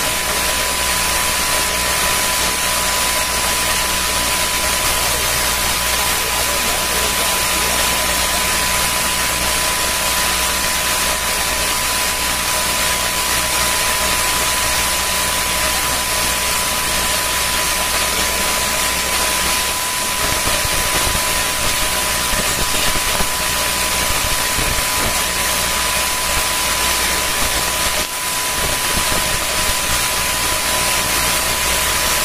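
Steady loud hiss of audio line noise, with a low electrical hum and a thin steady high tone underneath; it dips briefly near the end.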